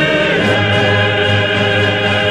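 Zarzuela male chorus and orchestra holding long, loud sustained notes at the close of the number, with the chord changing about half a second in.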